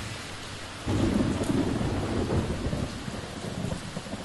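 Thunderstorm sound effect: steady rain with a low roll of thunder that swells about a second in and slowly dies away.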